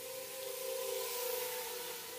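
Faint, steady whine of an HGLRC Rekon 3 Nano quadcopter's brushless motors and propellers in flight, growing a little louder about a second in and then easing off.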